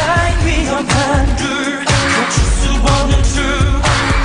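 K-pop song performed live by a male vocal group: a man's singing voice over an electronic pop backing track with a heavy, steady bass beat.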